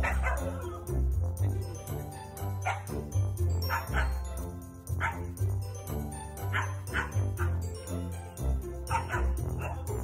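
Huskies barking at each other in a string of short barks, some in quick pairs, as they squabble over a treat. Background music with a light chiming melody plays under them throughout.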